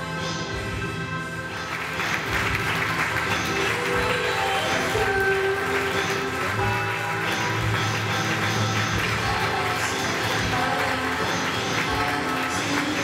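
Runway show music playing, with audience applause joining about two seconds in and continuing under the music.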